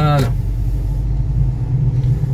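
Steady low rumble of a car's engine and tyres heard from inside the cabin while driving at low speed.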